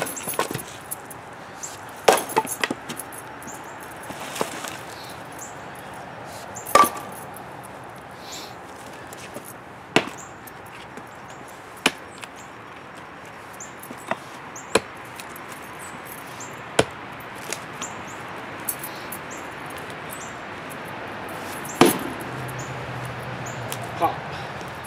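Heavy fireman's axe chopping into and splitting red oak firewood: about ten sharp chops and knocks spread through, the loudest about two, seven and ten seconds in and again near the end. The swings are light, letting the heavy head do the work.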